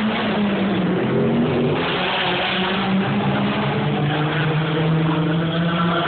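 Race car engine running hard at a distance, a steady note whose pitch drops in a few steps.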